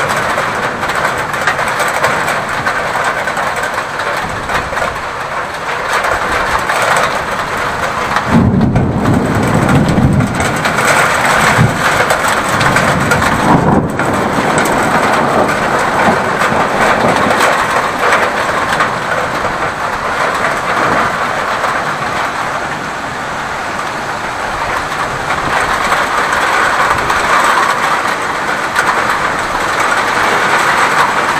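Heavy rain in a thunderstorm, a dense steady hiss, with a low rumble of thunder swelling about eight seconds in and fading by about ten seconds.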